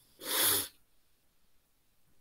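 A single short burst of breath noise, about half a second long, with no voiced tone, close to the microphone.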